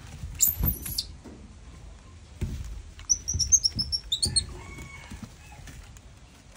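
Baby monkey squeaking in high, thin calls: a short burst about half a second in, then a quick run of about eight chirping squeaks about three to four seconds in. Several dull knocks and bumps sound between them.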